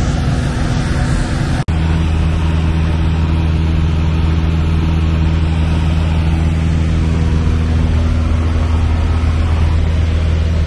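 Piper PA-28-160 Cherokee's four-cylinder Lycoming engine and propeller droning steadily in cruise, heard inside the cabin. The sound cuts out for an instant a little under two seconds in, then carries on with a deeper, steadier hum.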